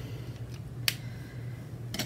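A single sharp click about a second in, over a steady low hum.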